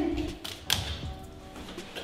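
Background music with a couple of sharp knocks on wooden stairs, the clearest about two-thirds of a second in and another at the end, as someone goes down the steps.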